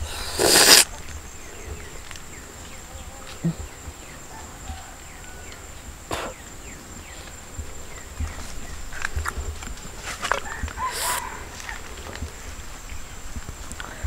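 A person biting into a raw, firm fruit with a short crunch in the first second, then chewing quietly, with a second, similar bite-like burst about eleven seconds in. A thin, steady, high-pitched insect call runs underneath.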